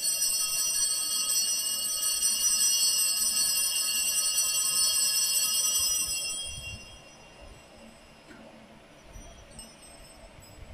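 Altar bells rung at the elevation of the chalice during the consecration of the Mass. A bright ringing of several high tones starts suddenly, holds for about six seconds and then dies away.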